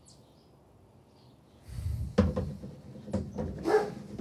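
Near silence, then a breathy exhale and a short burst of laughter in the second half.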